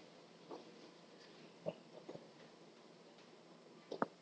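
Near silence: quiet room tone with a few faint, short knocks and rustles from people standing and shifting at their desks.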